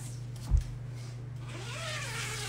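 A phone being handled and repositioned, with one dull thump about half a second in, over a steady low electrical hum.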